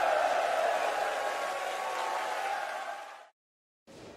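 Concert audience cheering and applauding after a song ends, slowly fading, then cut off abruptly about three seconds in.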